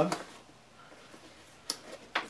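A single sharp click near the end, from the buckle clip at the bottom of a 5.11 Tactical backpack being undone, after a second or so of quiet fabric handling.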